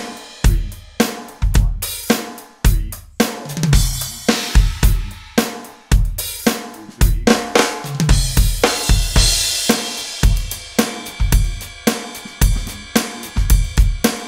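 Electronic drum kit played through its module: a steady groove of bass drum, backbeat snare and hi-hat, with a quick burst of four 32nd notes on the "and" of beat four. A crash cymbal washes over the beat about nine seconds in.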